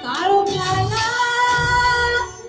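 A large massed choir of children singing in unison over an amplified musical accompaniment. The voices slide up into a note at the start, then hold long sustained notes.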